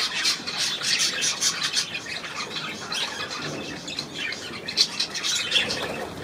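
A flock of budgerigars chattering: a dense, unbroken run of short high chirps and squawks.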